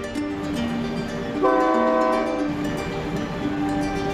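A locomotive horn sounds once, a steady chord held for about a second starting about one and a half seconds in, over background music.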